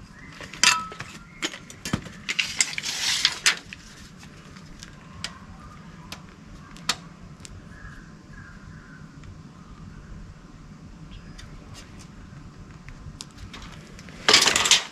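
Steel tape measure handled against the metal tow bar: scattered light metallic clicks and clinks, with a denser rattle about three seconds in, then occasional faint ticks.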